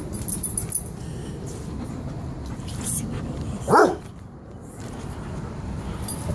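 Airedale terrier giving a single short, loud bark during play, about four seconds in.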